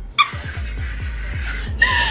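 A woman's long breathy laugh over background music with a steady beat.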